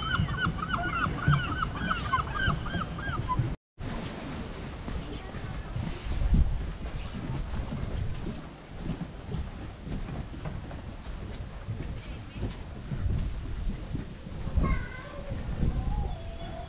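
A bird on a lake gives a rapid run of about a dozen honking calls, over lapping water and wind, until the sound cuts off abruptly about three and a half seconds in. Then wind noise and soft footfalls on a wooden boardwalk, with a few short bird calls near the end.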